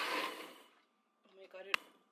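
Countertop blender pureeing chile sauce, its motor noise fading out over the first half second or so as it stops. About three quarters of the way through comes one sharp click.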